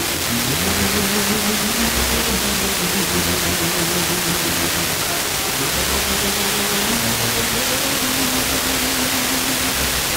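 Car FM radio tuned to 94.5 MHz giving loud, steady hiss, with faint music from a distant station just coming through underneath. The signal is weak, near the noise floor, as is typical of a station received by tropospheric scatter.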